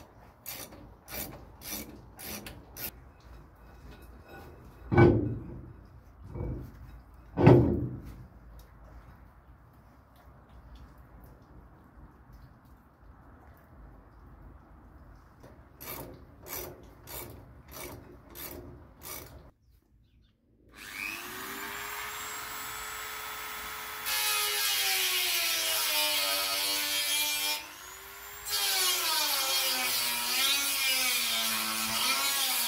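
Workshop tool noises: a run of sharp clicks and two heavy knocks, more clicks, then a power tool starts about twenty seconds in and runs on, its pitch steady at first and later rising and falling.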